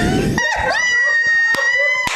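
A long, high-pitched wail starting about half a second in. It holds one steady pitch and rises slightly near the end.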